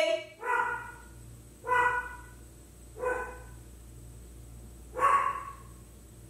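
Pet dog barking: four short single barks, the first three about a second and a half apart and the last after a longer pause. The owner puts the barking down to the dog being nosy.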